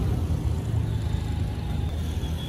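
Low, steady rumble of car and road noise from traffic on a city street.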